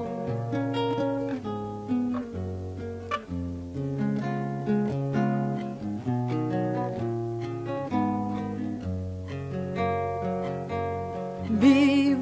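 Solo acoustic guitar playing an instrumental interlude: plucked melody notes over changing bass notes, in the style of an early-19th-century cielito. A woman's singing voice comes back in just before the end.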